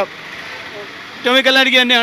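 Steady street traffic noise during a pause, then a man's voice speaking Malayalam into a handheld microphone from a little past a second in.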